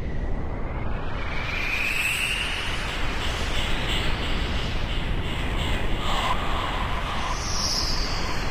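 Eerie atmospheric sound effects for a dramatic scene: a steady low rumble, with whistle-like tones gliding over it. One dips and rises early on, others waver through the middle, and a short high sweep comes near the end.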